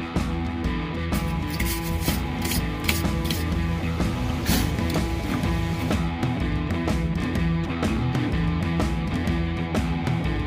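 A wire brush scrubbing rust off a steel brake drum and its wheel studs in quick strokes through the first half, over background music.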